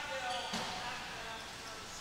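Gymnasium crowd murmur: faint, overlapping background voices in a large hall, with one soft thud about half a second in.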